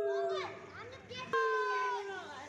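Two boys calling out long, drawn-out shouts, each held and sliding down in pitch: the first trails off about half a second in, and a second begins a little past one second in.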